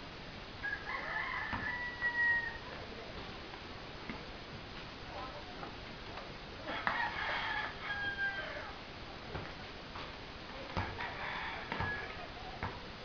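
A rooster crowing twice, each crow a held call of about two seconds, about six seconds apart. A few short thuds follow near the end.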